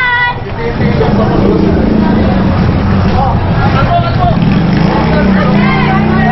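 A motor vehicle engine running close by, a steady low rumble, with people's voices over it near the start and again near the end.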